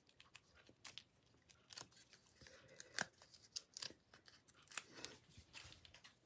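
Faint, irregular small clicks and paper rustles from hands handling cardstock and peeling and pressing foam adhesive dimensionals, with one sharper click about three seconds in.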